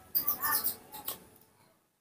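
Baby monkey giving a quick run of short, high-pitched squeaks, then one more squeak about a second in; the sound then fades and cuts out completely just before the end.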